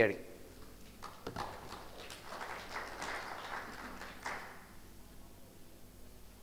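Audience applauding at moderate-to-low level. It starts about a second in and dies away after about four seconds.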